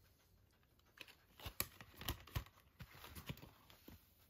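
Cardboard digipak being folded open and turned by hand: after a quiet second, a faint run of paper rustles, soft taps and sharp flicks of card for nearly three seconds, a few of them louder.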